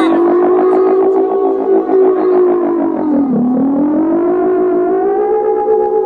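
Music: a held synthesizer tone that wavers rapidly at first, dips in pitch about three seconds in, then glides back up and holds a little higher as the song ends.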